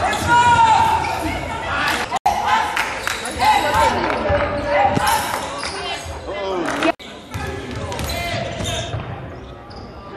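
Indoor basketball game sounds: the ball bouncing on the hardwood court, high sneaker squeaks and players' voices. The sound cuts out abruptly twice, about two and seven seconds in.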